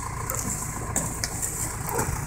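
A vehicle engine idling steadily, a low rumble, with a few faint rustles as a quilted moving blanket is handled.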